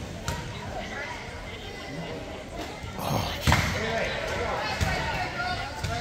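Basketball bouncing on a hardwood gym floor during a free throw, with spectators murmuring in the large hall. A sharper thud comes about three and a half seconds in.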